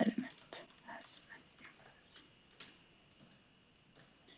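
Computer keyboard typing: faint, irregular keystrokes as a sentence is typed out. A brief low voice-like sound comes right at the start.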